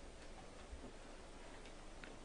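Near silence: faint room tone with a few faint clicks.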